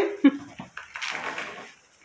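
A plastic soda bottle's screw cap twisted open, releasing a short hiss of carbonation gas about a second in.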